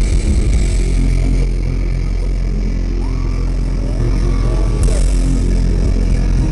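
Live rock band, loud: distorted electric guitars and bass holding low notes, with a couple of short sliding tones above them in the middle.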